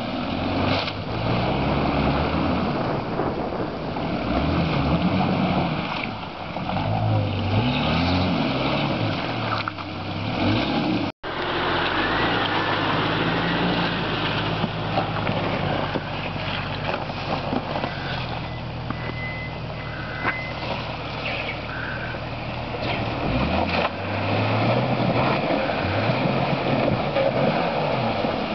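Jeep engine revving up and down repeatedly as the Jeep drives through a flooded, muddy trail crossing. The sound cuts out for an instant about eleven seconds in; afterwards the engine runs more steadily before revving hard again near the end.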